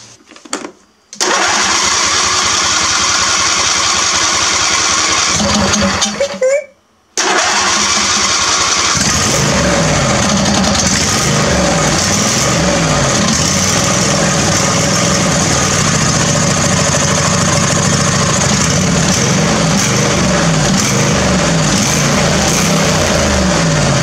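Briggs & Stratton 24 hp V-twin lawn tractor engine running loudly, its speed wavering up and down, now that fuel reaches the carburetor through a replacement fuel pump. The sound breaks off briefly about six and a half seconds in, then resumes.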